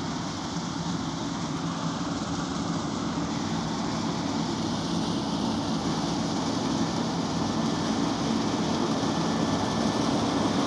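New Holland CR8.90 combine harvesting soybeans: its engine and threshing machinery run in a steady drone that grows gradually louder as it approaches.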